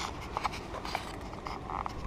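Low, steady rumble of an articulated lorry's diesel engine as the truck drives slowly away across the yard, heard fairly quietly, with faint outdoor background noise.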